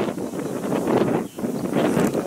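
Wind buffeting the microphone outdoors: a steady rough rushing with a brief lull a little over a second in.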